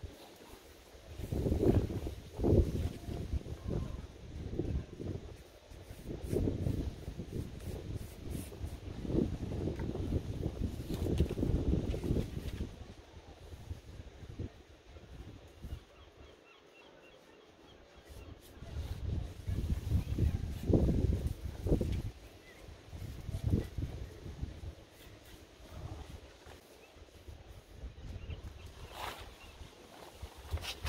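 Wind buffeting an outdoor microphone: low rumbling gusts that come and go, dropping to a lull about two-thirds of the way through.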